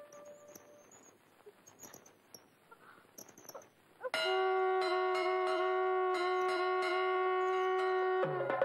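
Near-quiet for the first half, with a few faint scattered ticks. About four seconds in, a loud, steady, horn-like note with many overtones starts abruptly and holds, with slight regular wavers: a sustained note in the film's background score.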